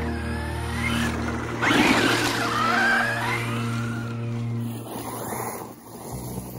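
Background music with steady held low notes, over which an Arrma Mojave 6S brushless RC truck is driven hard: its motor whine glides up and down in pitch with a burst of tyre and dirt noise from about a second and a half in to about four seconds.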